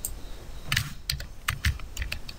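Computer keyboard keys clicking: a handful of irregular keystrokes starting a little under a second in.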